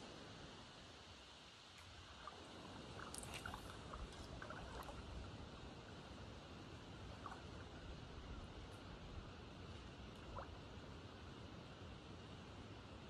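Faint, steady outdoor background noise, with a few faint short ticks a few seconds in and again near the end.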